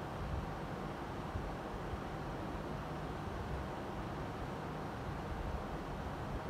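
Steady background noise, a low rumble with a hiss above it, unchanging and with no distinct events.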